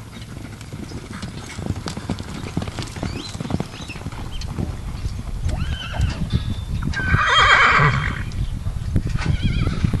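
Horses' hoofbeats on a dirt arena, growing louder as the horses come closer, with a loud whinny of about a second some seven seconds in.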